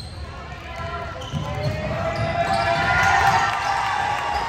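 A basketball being dribbled on a hardwood gym floor, a run of repeated low thumps, under voices calling out that grow louder about two seconds in.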